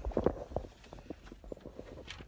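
Irregular light taps and knocks, several a second, loudest and closest together in the first half second.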